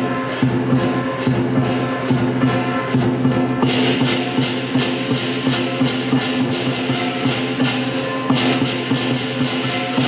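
Lion dance percussion: a Chinese drum, cymbals and gong keep a steady rhythm, with ringing held tones under regular cymbal crashes. The cymbals turn louder and brighter about three and a half seconds in.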